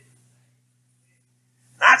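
A pause in a man's preaching: near silence with only a faint steady low hum, his voice trailing off at the start and starting again near the end.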